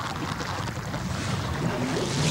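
Muffled, underwater-sounding rush of water and bubbles around a pickup truck's wheels as it wades through a river, over a low rumble.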